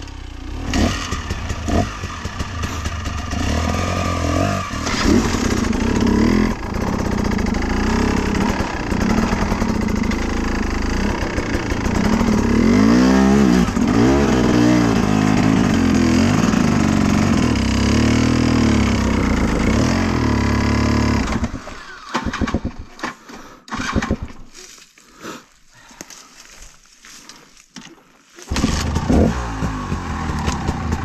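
Enduro dirt bike engine running under load, revving up and down as the throttle is worked. About 21 seconds in it cuts out, leaving several seconds of scattered clicks and knocks, then it starts and runs again near the end.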